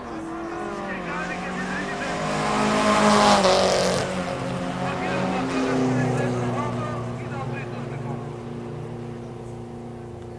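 Drag-race cars accelerating hard down the strip: the engine note builds to its loudest about three seconds in as they pass close, drops in pitch, then fades steadily into the distance.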